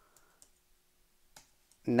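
A few faint, irregularly spaced keystrokes on a computer keyboard as code is typed.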